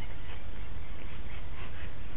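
Grey-headed flying-fox making soft, faint sounds as it takes a drink from a towel, over a steady low rumble.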